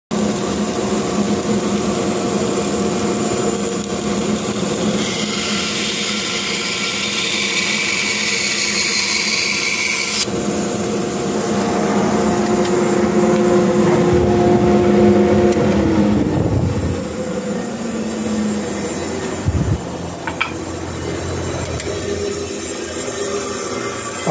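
Bandsaw running and cutting through a thick wooden block, a high hiss over the motor's steady hum that cuts off sharply about ten seconds in as the blade comes out of the cut. Around sixteen seconds the hum drops in pitch as the saw winds down, leaving a steady rush of background noise.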